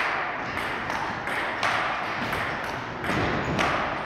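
Table tennis rally: a celluloid-type ping-pong ball knocking irregularly off the paddles and the table. One player's antispin rubber gives a dull pop on contact, which the commentator calls "шпокает".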